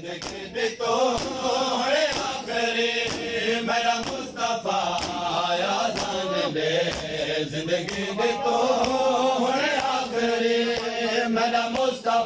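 Male voices chanting a Muharram noha, with a crowd of men doing matam, striking their chests in unison at about two blows a second.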